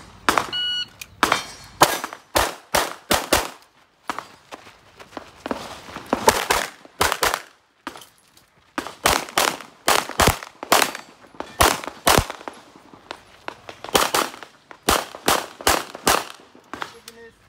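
A short electronic beep, typical of a shot timer's start signal, about half a second in. Then a CZ pistol fires many rapid shots, mostly in quick pairs, with short pauses between the groups.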